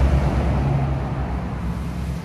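A steady low rumble with a faint hiss above it.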